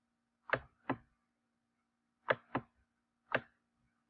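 Computer mouse clicking: five short, sharp clicks, two pairs and then a single one, over a faint steady hum.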